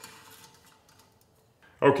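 A few faint small clicks at first, then near quiet, until a man starts speaking near the end.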